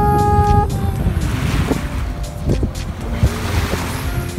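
A boat under way: a low steady rumble with wind and water rushing past. Background music plays over it, with a held note that ends about half a second in.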